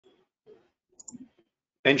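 A few faint short clicks about half a second apart, then a man starts speaking near the end.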